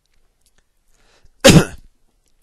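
A person sneezing once, loudly, about one and a half seconds in, after a near-silent pause.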